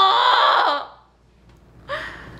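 A high, wavering crying voice that breaks off a little under a second in, followed by a brief lull and a short, sudden vocal sound near the end.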